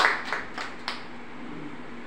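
Rhythmic hand claps, about three a second, growing fainter and dying out about a second in.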